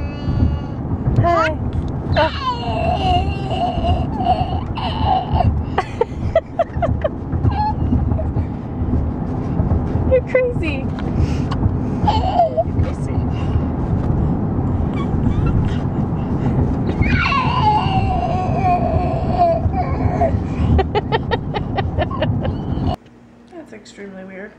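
A toddler's voice making long, held squealing calls with a growly, death-metal-like edge, several of them, the longest about four seconds, over the steady road rumble inside a moving car. The rumble cuts off near the end.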